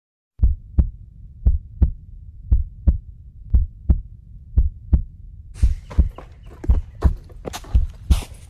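A heartbeat sound effect: low lub-dub double thumps, about one pair a second, starting out of silence. About five and a half seconds in, a rustling, crunching noise joins the beats.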